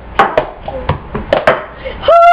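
Cup-song rhythm: hand claps and a plastic cup tapped and knocked on a counter, about five sharp strikes at an uneven beat.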